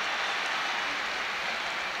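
Football stadium crowd cheering a goal, a steady wash of noise.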